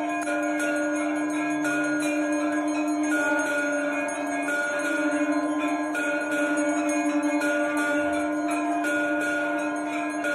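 Hand-rung brass temple bells struck rapidly and without pause during worship in the sanctum, over a steady low ringing tone that holds throughout.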